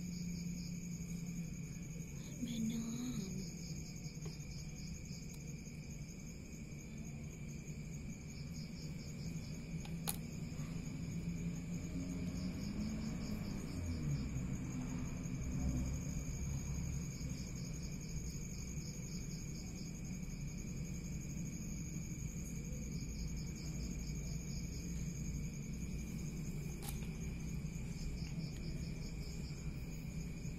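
Crickets chirping in repeated short trills, over a steady low hum and constant high-pitched tones.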